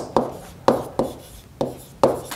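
Stylus tapping and scratching on a tablet screen during handwriting, in about four sharp taps.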